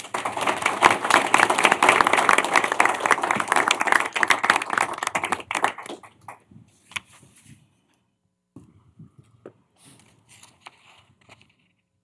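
Audience applauding for about five seconds, dying away. After that, only a few faint knocks and rustles.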